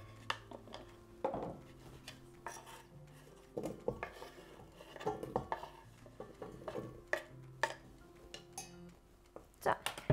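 Diced raw potatoes being scraped with a knife off a wooden cutting board into a stainless steel pot: scattered light knocks and clatter as the cubes drop in and the knife and board tap against the pot.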